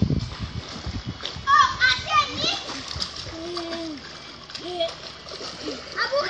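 Water splashing in a swimming pool, loudest right at the start, with children's high voices calling out over it.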